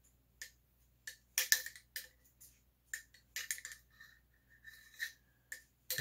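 A cleaning rod with a cloth patch being worked back and forth through an AR-type rifle's chamber and barrel. It makes a run of short metallic scrapes and clicks, about two a second.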